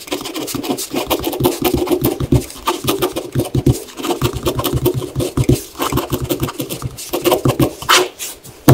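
Pen writing on grid paper: a dense, irregular run of scratching strokes.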